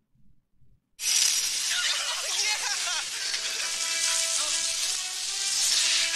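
Movie soundtrack: after about a second of near silence, a loud rushing noise sets in suddenly and holds, with sustained orchestral notes underneath and a voice briefly partway through.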